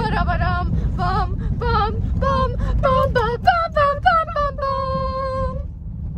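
A young woman singing a melody in a high voice, ending on one long held note near the end, over the steady low rumble of a car driving on a dirt road, heard from inside the cabin.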